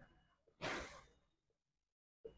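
A single short, faint breath out, about half a second in; otherwise near silence.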